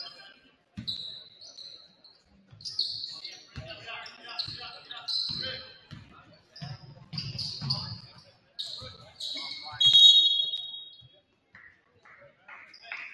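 Basketball sneakers squeaking on a hardwood court, many short high squeaks with a louder, longer squeal about ten seconds in, and a basketball thudding on the floor, echoing in a large gym.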